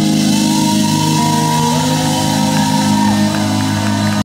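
Live rock band of acoustic guitar, lap-held steel guitar, keyboard and drums holding long sustained chords, with high notes sliding up and down in pitch and shouting over the music.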